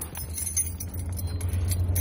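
Car idling, heard from inside the cabin as a steady low hum, with a few faint clicks and rustles.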